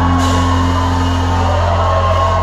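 Rock band playing live in a concert hall, recorded from the audience: a loud held low bass note under guitar lines, with a cymbal crash just after the start and scattered crowd whoops.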